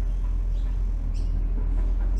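Steady low background rumble, with a faint brief rustle about a second in.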